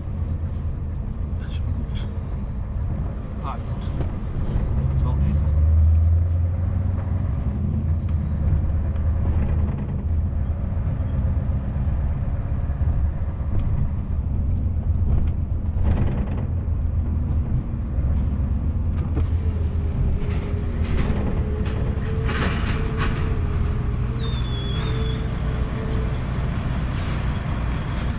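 Scania S650 V8 truck engine running at low road speed, heard from inside the cab with tyre and road rumble. The engine note swells louder about five seconds in, then settles back.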